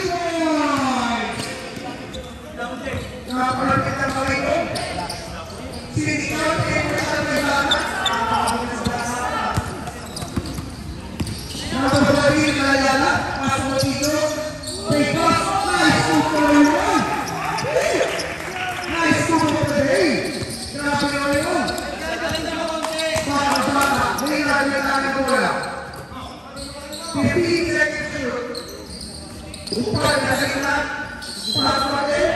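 A basketball being dribbled and bounced on a hard court during live play, under near-constant shouting and talk from players and onlookers.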